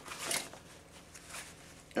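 Rustling and light handling noises as the IP-4M rebreather's carry bag is opened, with one louder rustle just after the start and a few soft clicks after it.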